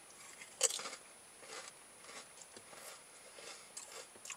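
A Rap Snacks potato chip bitten with one sharp crunch about half a second in, then chewed, with several fainter crunches over the next few seconds.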